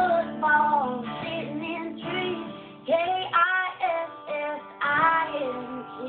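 A woman singing a country song to a strummed acoustic guitar, in phrases with long held notes, the guitar chords ringing under the voice.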